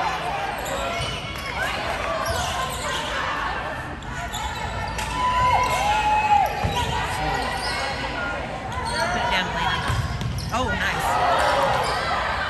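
Volleyball rally on a hardwood gym court: the ball being struck, short sneaker squeaks on the floor, and indistinct voices of players and spectators, all echoing in the hall.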